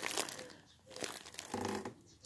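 Plastic wrapping crinkling as a shrink-wrapped bundle of yarn skeins is handled and lifted out of a cardboard box, in irregular bursts.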